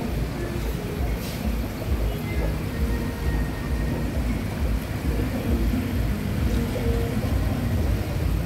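Restaurant and street ambience: a low rumble of traffic that swells and dips, with faint background music and distant chatter.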